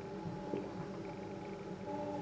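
A man drinking beer from a glass, with faint swallowing, over a steady low hum made of several held tones.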